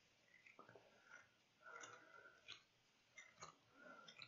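Faint, intermittent scraping and a few small clicks of a pencil being sharpened.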